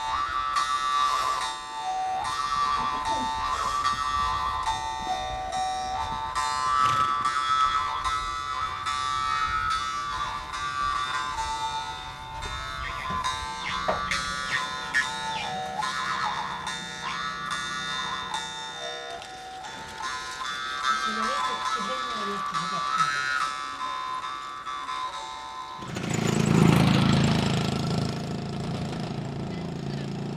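Khomus (Yakut jaw harp) played in a steady plucked rhythm: one unchanging drone note with a whistling overtone melody moving above it. About four seconds before the end it stops and a louder, noisier sound takes over.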